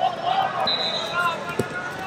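Wrestling tournament hall: voices calling out over the crowd noise, with high squeaks and a single thud about a second and a half in as the wrestlers scramble to the mat during a takedown.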